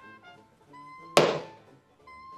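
A single sharp thunk a little over a second in, a knee-high boot set down hard on the floor, over light background music.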